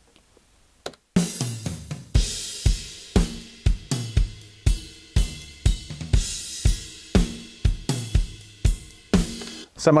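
Recorded acoustic drum kit played back over studio monitors, starting about a second in: a steady groove with kick drum hits about twice a second, snare and bright cymbals. The EQ'd overheads with the close snare and kick mics brought in, the cymbals popping through.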